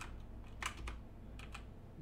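A few computer keyboard keystrokes, a quick cluster of clicks a little over half a second in, over a faint low hum.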